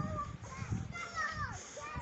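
Children's voices, high-pitched talking and calling out, quieter than the nearby narration.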